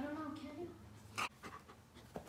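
A dog making a low, wavering vocal sound, then panting, with one short sharp breath a little over a second in.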